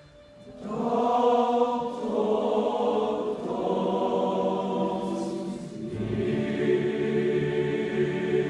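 Large boys' school choir singing in sustained chords. After a brief pause at the very start, the voices come back in, and the chords move lower about six seconds in.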